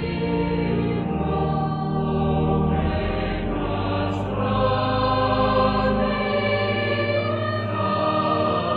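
Choral music: a choir singing long, held notes.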